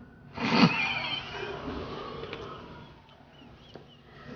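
Two people breaking into stifled laughter: a sudden burst held back behind a hand about half a second in, trailing off into quieter, squeaky giggles.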